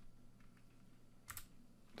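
Near silence with a few faint computer keyboard keystrokes, the clearest a little over a second in.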